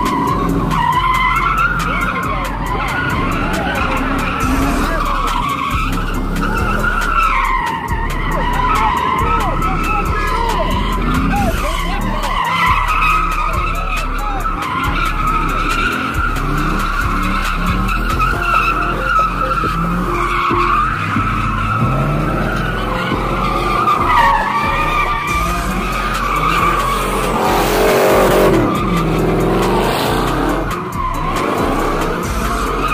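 Pontiac GTO's V8 revving up and down while doing donuts, its rear tyres squealing in one long, wavering screech.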